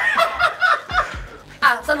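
People chuckling and snickering over quiet background music, with speech starting again near the end.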